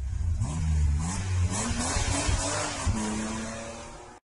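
Car engine sound effect revving and accelerating, its pitch climbing several times, then holding steady and fading out near the end.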